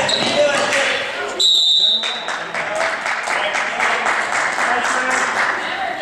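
Referee's whistle blown once, a short shrill blast about a second and a half in, stopping play, over spectators' chatter and a basketball bouncing on the gym floor.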